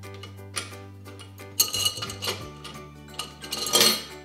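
Small metal objects clinking and rattling against a glass jar as a hand rummages through them. There are a few scattered clinks, and the loudest cluster comes near the end. Background music plays throughout.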